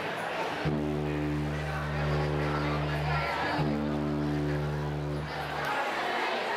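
A single low amplified note from the band's electric instruments, held steady for about two and a half seconds, cut off, then sounded again on the same pitch for nearly two seconds, over audience chatter.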